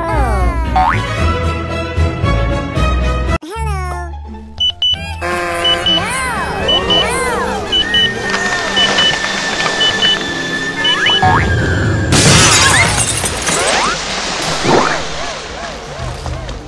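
Cartoon sound effects over background music: springy boings and sliding pitch glides, then a run of paired high beeps about once a second like a bomb countdown timer. About twelve seconds in, a loud noisy burst marks the water balloon bursting.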